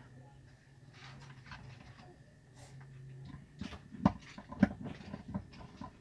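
Light clicks and knocks of a metal bolt and screwdriver against the plastic pulsator hub of a top-loading washing machine as the bolt is set in place. The taps come in the second half, with two sharper knocks.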